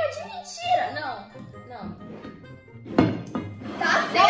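Background music and voices, with one sharp thunk about three seconds in as a plastic bowl is set down on the table.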